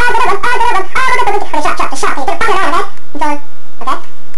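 A high-pitched, garbled voice chattering quickly, breaking off about three seconds in, followed by a couple of short squeaky syllables.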